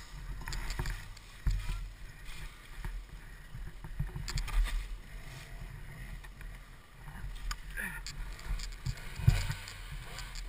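A dirt bike lying on its side in dry leaves being wrestled upright, with irregular knocks and thumps, the loudest near the start and near the end, and rustling leaves. The engine is not running.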